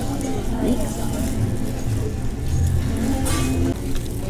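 Food-hall background: a steady low rumble with faint chatter from other diners, and a brief rustle about three seconds in.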